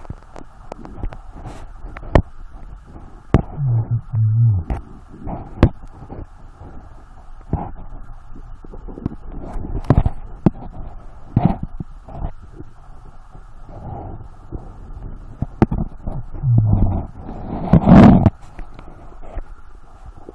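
Underwater sound of gold sniping in a river crevice, muffled and dull: irregular sharp clicks and knocks of stones and tools against the bedrock. Short muffled low hums from the diver come a few times, with a loud muffled burst near the end.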